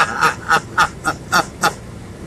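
A woman laughing in a quick run of short bursts, about four a second, stopping near the end.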